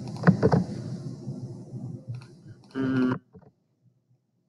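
Quiet room tone with a few soft clicks. About three seconds in comes a short hummed voice sound, and then the audio cuts to dead silence.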